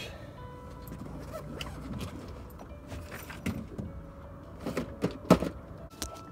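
Soft background music with long held notes, over which come a few sharp clicks and knocks from handling fishing tackle on a boat; the loudest knock is about five seconds in.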